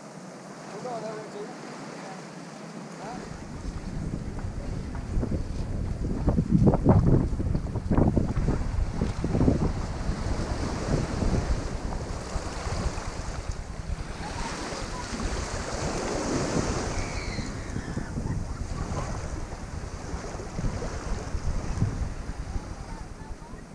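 Wind buffeting the camera microphone over small waves lapping at the shoreline. The low wind rumble starts about three seconds in and gusts loudest a few seconds later.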